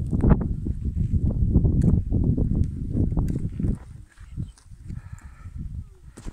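Wind buffeting the microphone: a loud, gusting low rumble that drops away about two-thirds of the way through.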